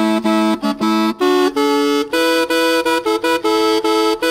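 Replica of the Louvre Aulos, the ancient Greek double reed pipe, playing a melody: both pipes sound at once in two parts, the notes broken by short tongued gaps a few times a second. The lower pipe steps up in pitch about a second in.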